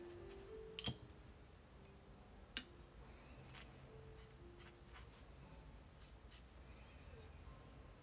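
Two sharp clicks about two seconds apart, then a few fainter ticks, over near-silent room tone with faint, short held notes of quiet background music.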